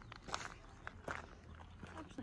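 Footsteps on a gravel and pebble shoreline: a handful of irregular, faint crunching steps over a low rumble.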